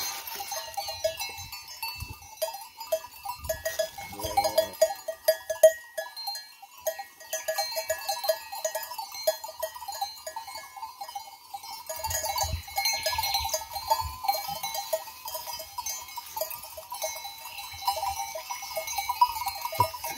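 Bells on a grazing sheep flock clinking irregularly and continuously, the sound of the flock moving and feeding.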